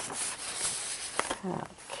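Handling noise of a handheld camera being moved over a stamp album page: a soft rubbing rustle for about the first second, dying away before a short murmur of voice near the end.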